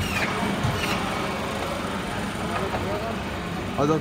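Electric meat band saw running with a steady hum and hiss.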